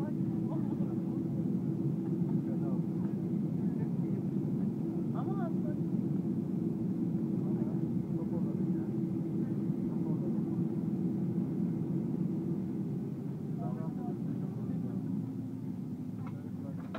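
Boeing 737 airliner cabin noise while taxiing after landing: the jet engines run with a steady rumble and a held hum. The hum drops away about 13 seconds in and the rumble eases toward the end.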